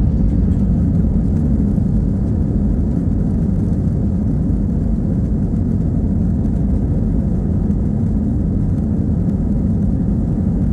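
Jet airliner cabin noise heard from a window seat over the wing: a loud, steady low rumble of the engines as the plane moves along the runway.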